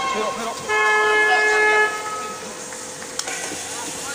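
A horn sounds one steady, loud note for just over a second, starting under a second in, over crowd voices and shouting.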